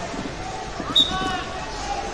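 Busy sports-hall ambience at a wrestling tournament: scattered short squeaks, most likely wrestling shoes on the mats, over voices. A short, sharp high-pitched chirp about a second in is the loudest sound.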